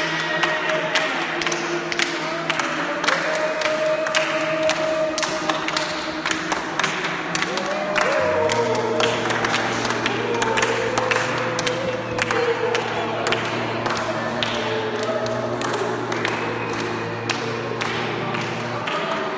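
A small group clapping hands in a steady rhythm while singing long, wavering notes together. About eight seconds in, a steady low hum joins underneath and holds.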